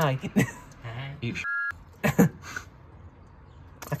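A young man laughing in several short bursts, with a brief high beep about one and a half seconds in.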